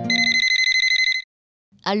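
Mobile phone ringing: a rapidly warbling electronic trill that rings for about a second and then cuts off suddenly.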